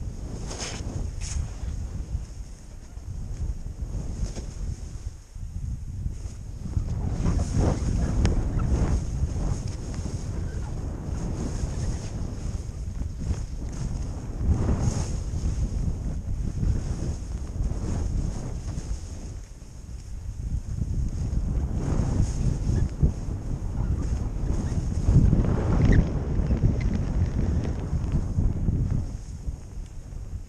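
Wind buffeting the microphone of a GoPro-style action camera while skiing downhill, with the skis hissing and scraping through chopped-up powder snow. The rush swells and eases, loudest a few seconds before the end.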